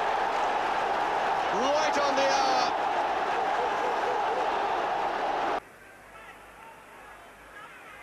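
Football stadium crowd cheering a goal: a loud, steady mass of voices with a few shouts rising above it. It cuts off suddenly about five and a half seconds in, leaving a much quieter crowd murmur.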